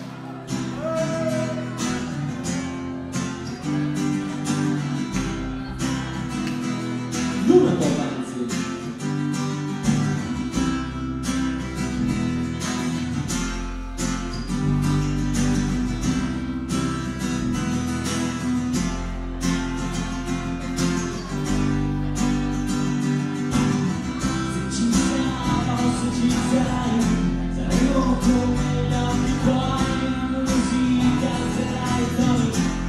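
Live band playing a song: strummed acoustic guitar and electric bass over a steady drum beat, with a male singer. The music comes in right at the start.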